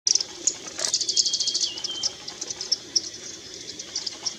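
Yellow-throated fulvetta calling: a quick run of high, thin chips in the first two seconds, then more scattered chips.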